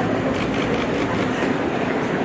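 Wheels of rolling suitcases clattering steadily over the paving as a group walks along.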